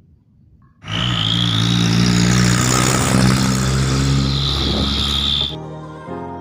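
A loud, noisy edited-in sound effect with a low steady hum under it starts about a second in, lasts nearly five seconds and cuts off abruptly. Transition music with brass and piano follows near the end.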